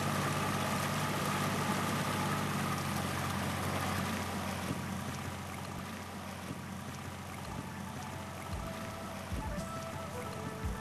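A boat's outboard motor running steadily with water rushing past, under background music; the motor's low drone fades about halfway through.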